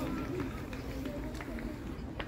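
Indistinct voices of football players calling across the pitch, over steady open-air background noise, with a few faint short ticks.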